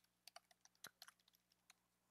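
Faint computer-keyboard keystrokes: a run of light, irregular clicks as a password is typed.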